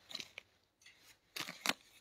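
Faint crisp rustling and clicking of tagged, packaged socks being handled: a few soft rustles, then two sharper clicks about a second and a half in.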